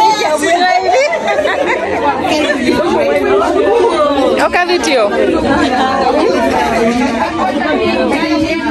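Several women's voices talking over one another at once: overlapping chatter.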